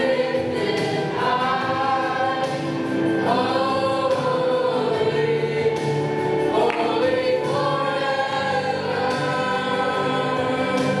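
A youth choir of boys and girls singing a hymn together, with long held notes and gliding phrases.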